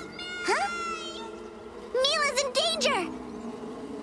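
A cartoon squirrel's wordless vocal sounds: a held whine in the first second with a quick rising squeak, then a wavering call about two seconds in. A swarm of bees buzzes faintly underneath.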